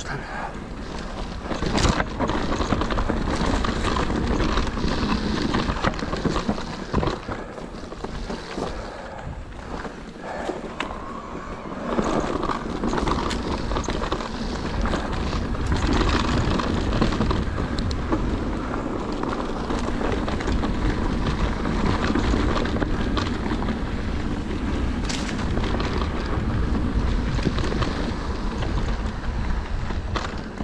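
Cube Stereo Hybrid 140 TM e-mountain bike riding fast down a rough dirt trail: continuous wind buffeting on the microphone and tyre rumble, with frequent knocks and rattles from the bike over bumps.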